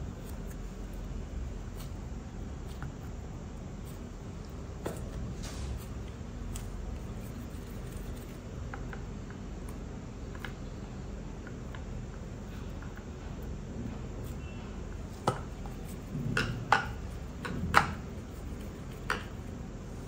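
Kitchen handling sounds while a ball of roti dough is shaped by hand over a rolling board, over steady low background noise. In the last five seconds come a handful of sharp clicks and knocks from kitchen utensils and vessels being handled.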